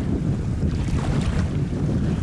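Wind rumbling on the microphone, steady and low, over faint lapping of calm, shallow salt water.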